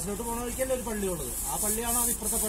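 A stiff hand brush scrubbing an elephant's wet hide in repeated strokes, a hiss that swells and fades about twice a second, with people's voices alongside.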